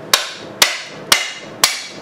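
Hammer striking the crankshaft end of an antique Briggs & Stratton 5S engine, four sharp metallic blows about two a second, each with a short ring, driving the tight-fitting side cover off the crankcase.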